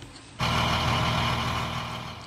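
Engine of a heavy armoured military truck running steadily, a low hum under a loud even rush, cutting in suddenly about half a second in.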